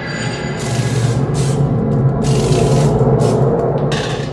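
Intro logo music sting: a swelling, sustained electronic drone with a heavy low hum, overlaid with several short hissing whooshes.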